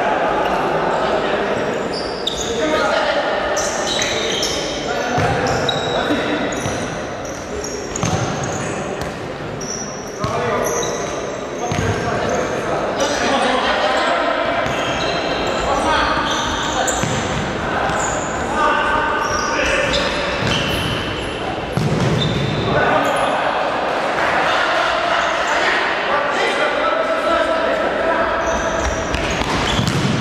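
Indoor futsal game in a large, echoing hall: the ball being kicked and bouncing on the wooden court, with players' voices calling out throughout.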